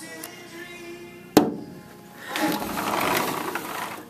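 Battery-powered toy truck's electronic sound effects: a quiet steady tune, a sharp click about a second and a half in, then a louder buzzing motor-like noise for a second and a half near the end.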